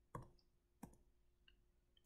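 Two faint, short clicks about two-thirds of a second apart, over near silence.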